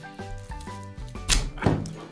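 Background music with steady notes, and two sharp thunks about a second and a half in from the cardboard jigsaw-puzzle box being opened and handled at the table.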